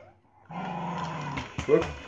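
A battery-powered motorized toy train switched on about half a second in, its small electric motor running steadily.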